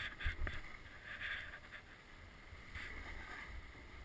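Snow hissing under a rider's edges in repeated turns down a slope, a swish about every one and a half seconds, over wind rumbling on the microphone. A knock and thump come about half a second in.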